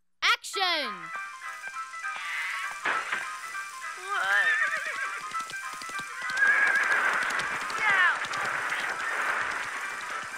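Cartoon horse whinnying three times: a falling neigh right at the start, a wavering one about four seconds in and another falling one about eight seconds in, over background music.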